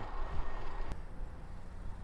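Steady low rumble of wind on the microphone and tyre noise from a RadMission 1 electric bike rolling along pavement, with a single click about a second in.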